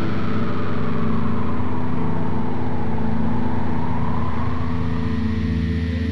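Electronic music: a held, distorted low drone chord with a rapid fine pulsing, under a hiss-like sweep that falls in pitch and then rises again. It eases off slightly in the last couple of seconds.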